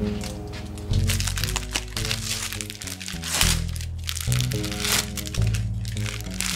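Background music, with crackly bursts of thin plastic film crinkling and tearing as a triangle kimbap wrapper is pulled open. The loudest burst is about three and a half seconds in.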